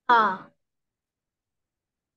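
Speech only: a single drawn-out 'a...' that falls in pitch, lasting about half a second, followed by complete silence.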